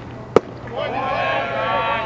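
A pitched baseball smacking into the catcher's leather mitt: one sharp pop about a third of a second in. Voices call out from about a second in.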